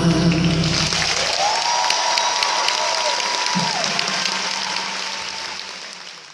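Concert audience applauding and cheering as a live song ends, the band's last held chord stopping within the first second. One long high call from the crowd rises over the clapping for about two seconds, and the applause fades toward the end.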